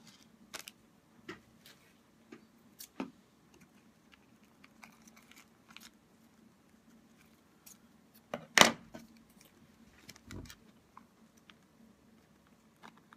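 Scissors trimming a piece of clear plastic sheet, with scattered small snips and handling clicks. A loud sharp click about eight and a half seconds in, and a duller thump just before ten and a half seconds.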